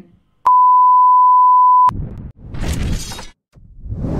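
A single steady, mid-pitched electronic beep lasting about a second and a half: the exam-style tone that marks the end of a dialogue segment. It is followed by two short noisy sound-effect bursts as a logo animation plays.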